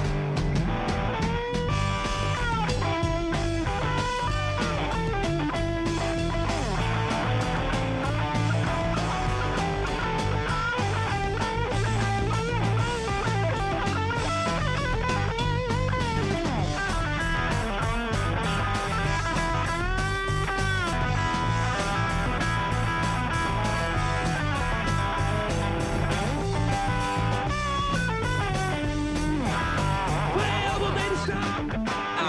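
Hard-rock band playing an instrumental break: lead electric guitar playing bent, gliding notes over steady bass and drums.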